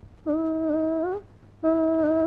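A woman humming a melody in a 1960s Tamil film song: two held phrases, the first rising at its end, with a short break between them.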